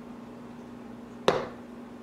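A single sharp knock a little past halfway as the two rubber halves of a Toppl treat toy are pressed together on a countertop.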